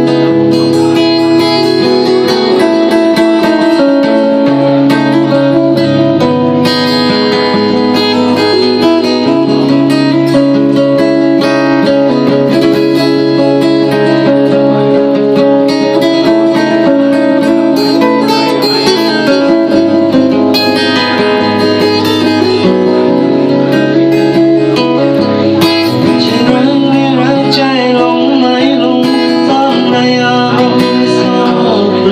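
Acoustic guitar being played continuously, strummed and picked chords with low bass notes changing every few seconds.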